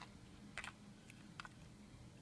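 Three faint, light clicks of hard clear-plastic eyeshadow compacts being handled and set against one another, over a faint steady low hum.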